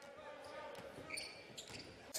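Basketball game sound on a hardwood court: the ball dribbling, with short high sneaker squeaks about a second in, over a low arena crowd murmur.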